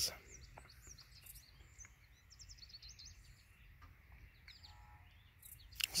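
Faint outdoor birdsong: many short chirps and quick trills from small birds, over a low steady background rumble.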